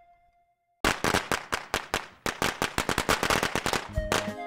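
A string of firecrackers going off: a rapid, dense crackle of sharp bangs starting about a second in, with a brief break about halfway through.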